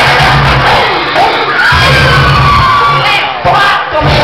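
Loud dance music with a heavy bass beat, with a crowd cheering and shouting over it. The beat drops out briefly about a second in and again near the end, leaving the crowd's shouts.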